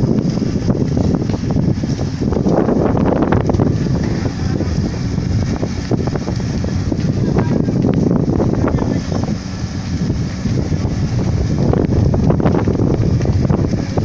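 Steady, loud rumbling noise of wind buffeting the microphone, mixed with the noise of a large building fire burning, with irregular crackle throughout.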